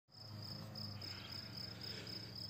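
Faint cricket chirping steadily, a high-pitched pulse repeating about four times a second, over a low steady hum.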